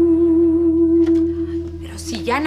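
Background music: a single sustained note held over a low drone, fading in the second half.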